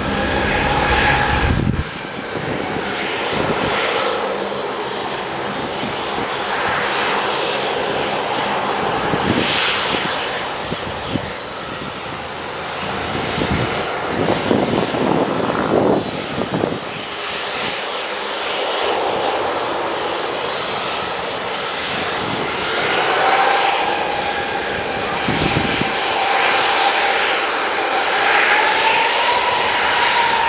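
Boeing 737-800's CFM56-7B turbofan engines running at taxi power: a steady jet rush with a turbine whine that rises a little in pitch in the last several seconds as the aircraft swings onto the runway.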